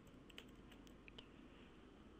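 Faint computer keyboard typing: a few soft, irregular keystrokes over near-silent room tone.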